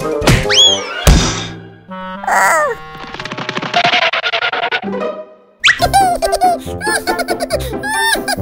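Cartoon sound effects: a whistling pitch glide, then a loud thunk about a second in, followed by falling whistle glides and a rattling noise. From a little past halfway, children's cartoon music with a character's laughing sounds.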